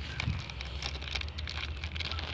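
Handling noise: a gloved hand rubbing and moving right by the camera microphone, a faint crackling rustle of many small ticks over a low steady hum.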